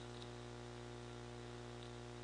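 Faint steady electrical hum with a light hiss underneath: the background noise of the recording, with no other sound.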